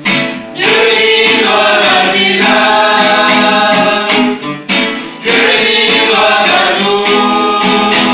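Small mixed group of men and women singing a worship song together to strummed acoustic guitars, in two long held phrases with a short break between them.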